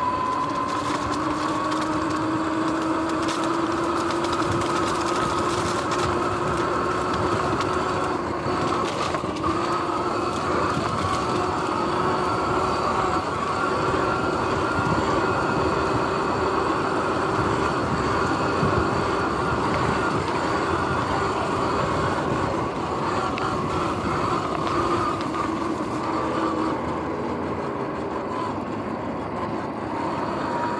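Sur-Ron X electric dirt bike under way: its motor and drivetrain whine climbs in pitch as it speeds up, then holds steady over a constant rush of wind and tyre noise. The whine eases off slightly near the end as the bike slows.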